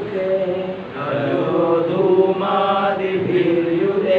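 A man chanting a Sanskrit verse in slow, melodic recitation, holding each syllable on a steady note.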